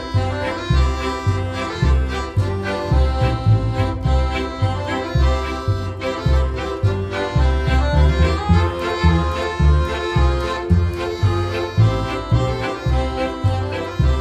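Instrumental Polish folk band music: an accordion carries the melody with fiddles, over a steady, regular bass beat.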